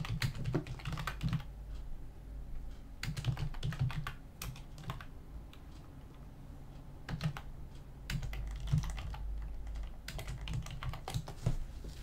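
Typing on a computer keyboard: several short runs of keystrokes, with a pause of about two seconds near the middle.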